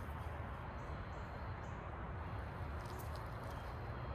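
Faint, steady outdoor background with a low rumble, and a couple of light ticks about three seconds in.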